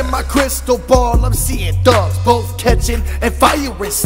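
Hip hop track: rapped vocals over a beat of long, deep bass notes and sharp drum hits.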